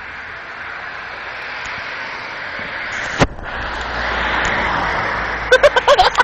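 A car driving past on the street, its tyre and engine noise growing louder to a peak about four seconds in and then fading. There is a single sharp knock about three seconds in, and quick bursts of laughter near the end.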